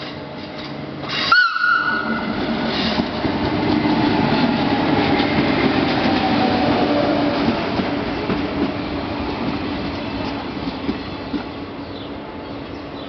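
Short horn blast from a Travys regional electric train about a second in, then the rumble of the train running past, swelling and easing off, with a falling whine from its drive.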